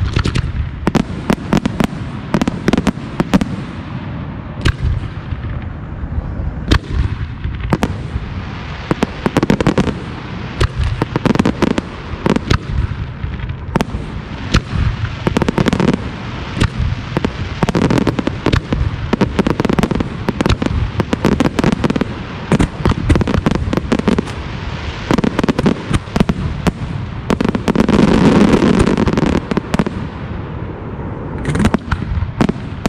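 Aerial firework shells from a daytime smoke-and-colour display bursting in quick succession: a rapid run of sharp reports and booms, growing into a denser, near-continuous volley close to the end.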